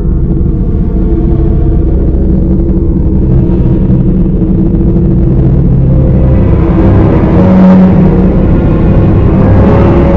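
A loud, low rumbling drone with steady held tones, swelling slightly near the end: an ominous horror-film soundtrack drone.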